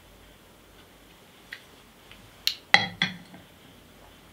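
A small whisky glass set down on the wooden top of a cask, giving a cluster of three sharp clinks and knocks in under a second, a little past halfway.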